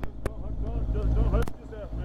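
Motorcycle engine idling low and steady, with a few sharp clicks near the start and another about one and a half seconds in.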